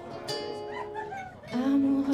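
Acoustic guitar accompanying a woman singing into a microphone, her voice sliding between notes about a second in and then swelling into a louder held note from about a second and a half in.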